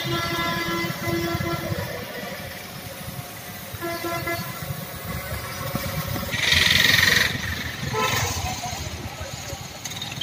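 Road traffic with a vehicle horn held for about two seconds, then sounded again briefly about four seconds in. A loud, short hiss comes about two-thirds of the way through.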